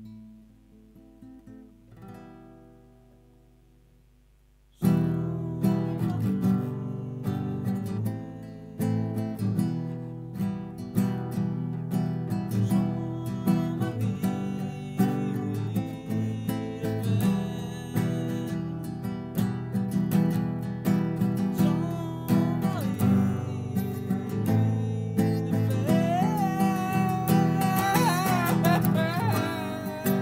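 Nylon-string classical guitar: a few sparse notes ring out and fade, then vigorous strumming starts about five seconds in and carries on. Near the end a man's voice joins, singing a high, wavering line over the strumming.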